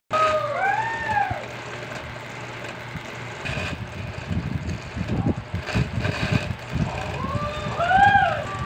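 Clothes being hand-washed in a basin of soapy water: wet cloth scrubbed, wrung and sloshed in uneven bursts through the middle stretch. A rising-and-falling call is heard near the start and again near the end.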